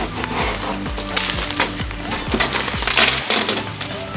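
Small metal Allen wrenches clinking and rattling on a table as they are shaken out of a bag and sorted, with background music playing throughout.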